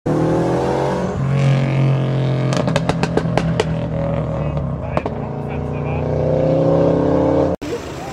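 Car engine running steadily, its pitch shifting as the sedan approaches and pulls up. A quick run of sharp clicks comes about a third of the way in and a single click about two-thirds in. The sound cuts off abruptly just before the end.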